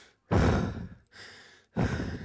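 A distressed woman breathing heavily: a loud sighing breath out, a softer breath in, then another loud sighing breath out about a second and a half after the first.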